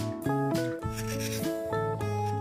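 Background acoustic guitar music with plucked notes, over the scrape of a steel hand chisel paring shavings from the inside of a bamboo cup.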